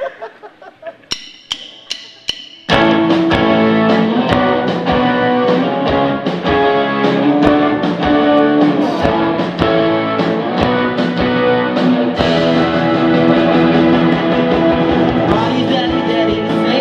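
Four evenly spaced clicks count in, then about three seconds in a live rock band comes in loudly all at once, with electric guitars, bass and drums playing a steady beat.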